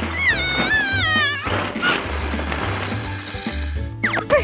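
Cartoon background music with a steady bass pulse. About a quarter second in, a high, wavering squeal from a cartoon character lasts about a second, followed by a noisy rustle.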